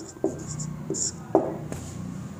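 A marker squeaking across a whiteboard in a few short strokes.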